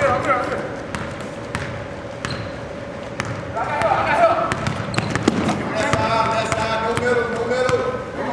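Basketball game in a gym: a ball bouncing on the court in sharp repeated knocks, with players and spectators calling out, the voices louder in the second half.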